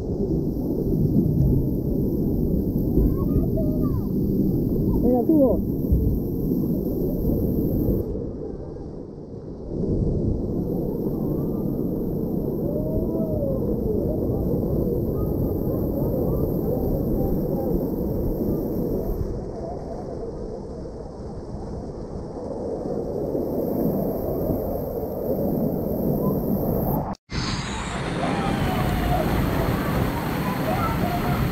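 Muffled, steady rush of splashing and spraying water at a water park, with faint distant voices calling out now and then. The sound cuts out abruptly for a moment near the end.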